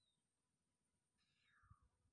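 Near silence. A faint high call falls in pitch about one and a half seconds in, and a faint low rumbling starts near the end.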